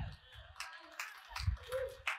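A few faint, scattered handclaps from a church congregation, with a brief faint voice calling out near the end.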